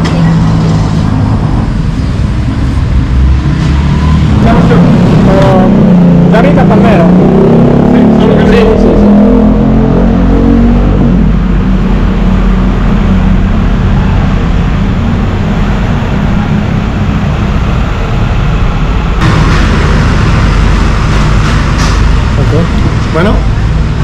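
Road traffic: a motor vehicle's engine rises and falls in pitch as it goes by, over a steady low rumble.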